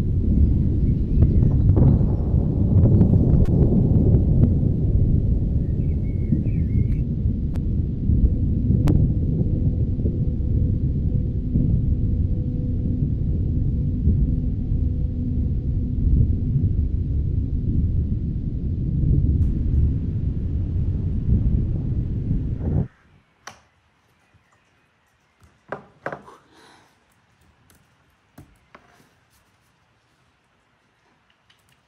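Loud, low, muffled rumbling noise of a covered or mouthed camera microphone. It cuts off suddenly about 23 seconds in, leaving near silence with a few faint knocks.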